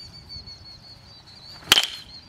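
A baseball bat striking a ball once during batting practice: a single sharp crack with a short ring, near the end.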